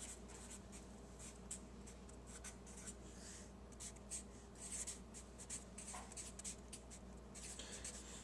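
Felt-tip marker writing on paper: faint, quick scratchy strokes, many short ones in irregular runs, over a low steady hum.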